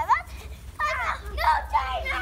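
Children's high-pitched shouts and squeals, four short wordless calls in quick succession, over a steady low rumble.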